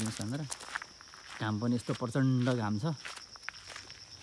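A man talking in short bursts, at the start and again from about one and a half to three seconds in, over footsteps on a gravel path. A steady high-pitched insect drone runs underneath.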